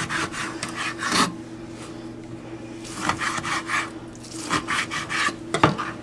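Kitchen knife cutting lime halves into pieces on a cutting board: short sawing strokes through the rind and taps of the blade on the board, in a few separate bursts.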